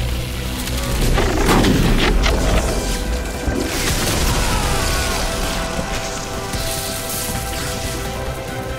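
A dramatic film score plays under heavy sci-fi sound effects of booming, surging electric lightning. The impacts are densest between about one and two and a half seconds in, and a falling sweep follows a couple of seconds later.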